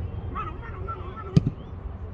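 Outdoor football match sound: steady wind rumble on the microphone and faint distant shouting from the players. One sharp thump comes about one and a half seconds in, followed by a smaller one.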